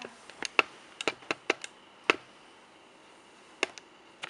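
Sharp, irregular clicks and ticks while a wrapped doll and its packaging are handled. About ten come close together in the first two seconds, then two more near the end.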